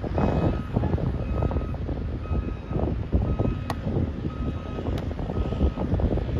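Wind buffeting the microphone, with a vehicle's reversing beeper repeating in the background at about one half-second beep a second. Two sharp taps come in the second half.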